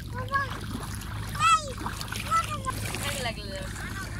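A young child's voice giving several short, high-pitched calls without clear words, the loudest about one and a half seconds in, over splashing of feet wading through shallow river water.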